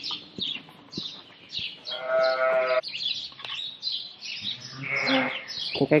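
A sheep bleats once for most of a second, about two seconds in, and gives a weaker bleat near the end. Small birds chirp in the background.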